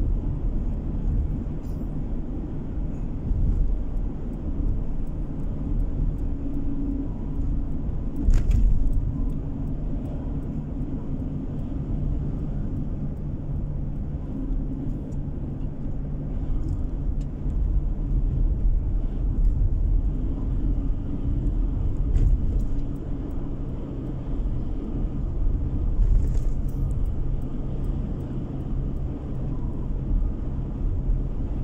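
Car cruising at a steady speed, heard from inside the cabin: an even low rumble of road and engine noise with a faint steady drone. A brief thump about eight seconds in.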